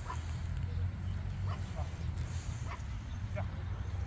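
A dog barking: several short, separate barks at irregular intervals, over a steady low rumble.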